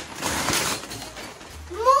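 Gift wrapping paper rustling and tearing, with a child's voice starting near the end.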